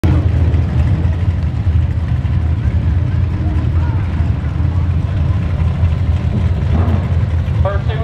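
Drag cars' engines idling at the starting line, a loud, steady low rumble.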